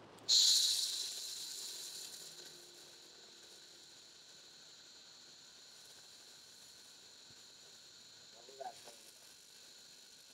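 A Jasic LS-15000F handheld fiber laser gun fires in rust-removal mode on the end of a coated metal bar and burns it. It gives a sudden loud hiss that fades away over about two seconds.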